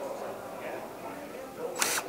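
Low, steady room background, then near the end a brief sharp burst as a cordless drill is set onto the top of an adjustable dock leg's screw, just before it starts driving the screw.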